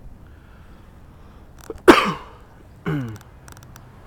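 A person close to the microphone coughing twice, a sharp, loud cough about two seconds in and a weaker one a second later, each falling in pitch.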